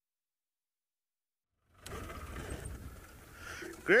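Dead silence for almost the first two seconds, then an outdoor live feed cuts in abruptly with a low rumble and faint hiss. A man says "great" right at the end.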